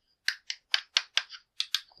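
Fingers tapping the hollow plastic casing of a 7-port USB 3.0 hub: about nine quick, light clicks at roughly four to five a second, a sign that the case is plastic and empty inside.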